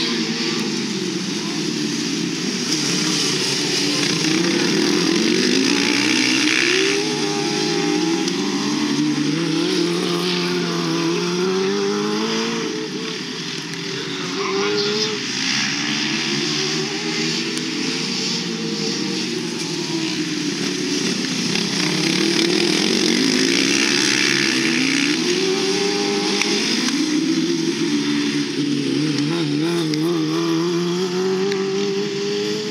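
Engines of several racing ride-on lawn mowers running together, their pitches repeatedly rising and falling as the mowers speed up and slow down around the track.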